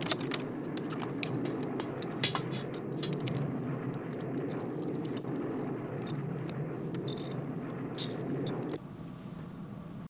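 Metal clicks, rattles and scrapes as a panel in an airliner's equipment bay is worked loose by hand, over a steady low hum that drops away sharply near the end.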